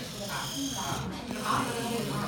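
Small electric motor buzzing steadily as it drives the plastic gears of a toy bevel gear transmission model, with people talking over it.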